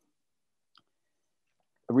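Near silence in a pause between words, broken by one faint small click a little under a second in. A man's speech starts again near the end.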